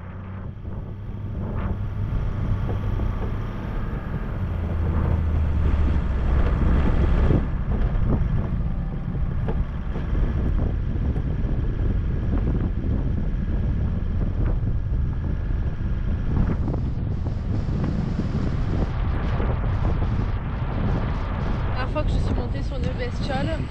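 Diesel Toyota Land Cruiser HDJ100 engine droning steadily as the 4x4 drives along a rough dirt track. Wind buffets the outside microphone, and faint knocks come from the uneven ground.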